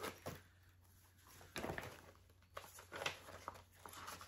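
Faint rustling and crinkling of a clear plastic project bag and the paper pattern being pulled out of it, in a few short bursts of handling.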